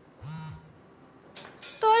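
A mobile phone vibrating: one short, low buzzing pulse well under a second long, the second of a pair. A few faint clicks follow, and a woman's voice starts near the end.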